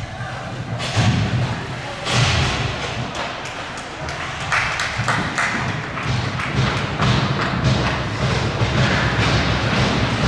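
Ice rink ambience: a run of knocks and thumps over indistinct voices and music.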